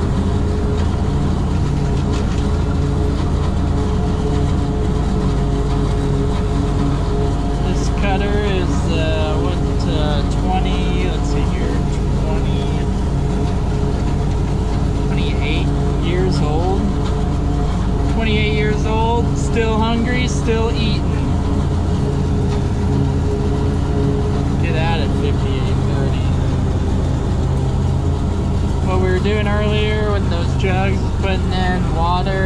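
Steady low drone of heavy diesel engines heard from inside a silage truck's cab as it keeps pace with a John Deere 5830 self-propelled forage harvester chopping corn. Short, wavering voice-like sounds come through several times, about a third of the way in, around two-thirds in and again near the end.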